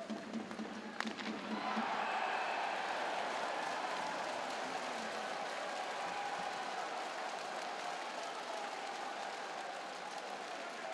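Ice hockey arena crowd: a sharp crack about a second in, then cheering and applause swell up and hold, easing off slowly.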